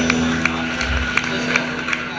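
Rockabilly / old-country swing music from a double bass and guitar trio: a held low note under a steady beat of sharp ticks, about three a second, with occasional deep bass thumps.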